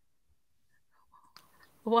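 Near silence for about a second and a half, then a faint breathy sound and a voice saying "Why?" near the end.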